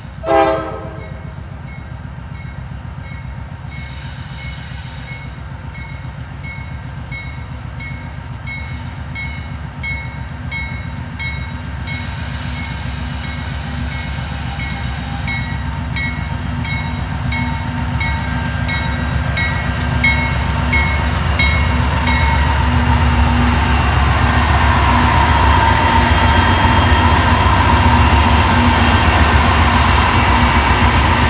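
Norfolk Southern GE AC44C6M diesel-electric freight locomotives approaching and passing close by while holding a long train back on a downgrade, their engine rumble growing steadily louder as they draw alongside. A short, loud horn toot at the very start, and a locomotive bell ringing steadily for most of the first twenty seconds.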